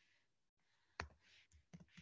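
Near silence broken by one sharp click about a second in, with two fainter ticks near the end.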